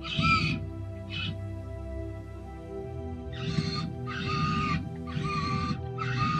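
LEGO Technic motors driving a mecanum-wheel robot through its gears in short bursts of whining, about six runs of half a second or so each, over steady background music.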